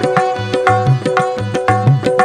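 Instrumental interlude of a live qawwali-style song: tabla and dholak playing a steady rhythm of about four strokes a second, under harmonium and banjo holding a repeated melodic phrase.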